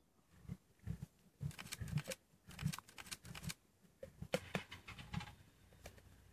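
Lions feeding at the remains of a warthog kill: faint, irregular chewing, crunching and licking sounds, with rustles in dry grass, several a second throughout.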